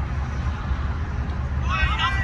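Steady low outdoor rumble. Near the end comes a high-pitched call that rises and falls in pitch.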